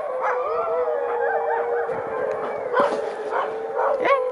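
Several Alaskan malamutes howling together in a long, held chorus of overlapping notes, with short yips and whines breaking in on top.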